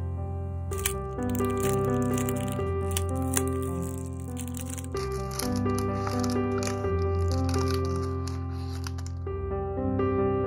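Soft background piano music, with the crinkling and rustling of a thin clear plastic wrapper being pulled off a roll of washi tape. The crinkling starts about a second in and stops near the end.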